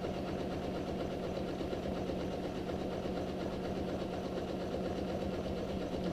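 Janome sewing machine running steadily as it stitches an automatic one-step buttonhole with the buttonhole foot.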